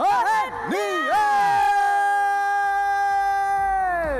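An announcer's voice calling out a few quick syllables, then holding one long, drawn-out shout for about three seconds that drops away at the end. It is the winner's number being announced.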